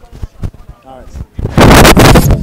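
A few faint words, then about a second and a half in a sudden, very loud boom sound effect that keeps ringing, the opening hit of an animated logo sting.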